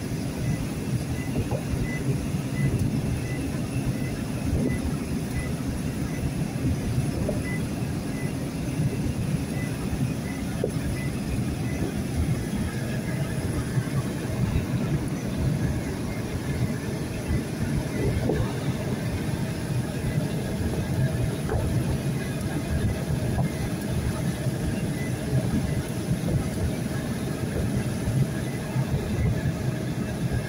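Steady in-cab road noise of a vehicle driving on a wet highway: engine and tyre hum, with a faint regular ticking about every half second during the first twelve seconds or so.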